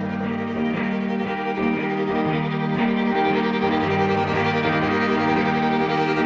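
Instrumental break of a folk song: a violin carries the melody over semi-hollow electric guitar accompaniment, with no singing.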